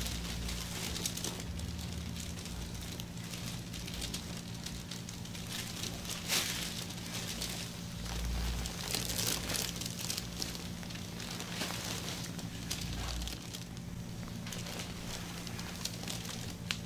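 Gloved hands rubbing and kneading oiled skin in a massage: irregular swishing, crinkling rustles of the plastic gloves, with a steady low hum underneath.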